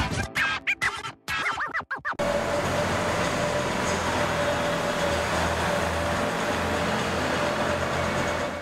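For about the first two seconds, music breaks off in short choppy bits. Then an ice resurfacer runs steadily on the rink, a constant low engine hum with a faint steady whine over a noisy hiss.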